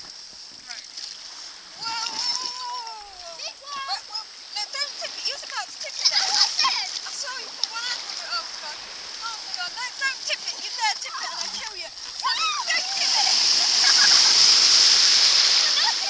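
Water splashing in shallow sea water as children move around and climb into an inflatable dinghy, with children's voices calling out over it. The splashing grows louder for the last few seconds.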